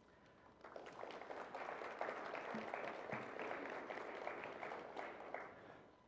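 Audience applause: a spread of many hands clapping. It starts about half a second in, holds steady for several seconds and dies away near the end.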